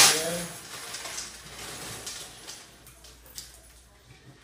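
Hand-turned clear acrylic raffle drum, paper ticket stubs tumbling and rustling inside it with a few light clicks, fading away over about three seconds as the drum slows.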